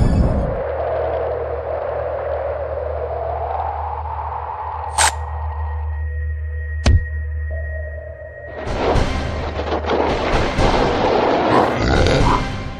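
Dramatic animation soundtrack: a sustained low drone, two sharp hits about two seconds apart, then a louder, busier passage near the end.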